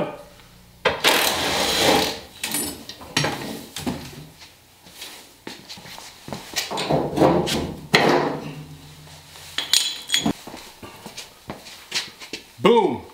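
Metal clinks, knocks and scraping as small tabs are taken off a bare Early Bronco door and the loose door is handled. The longest scrapes come about a second in and again around seven seconds.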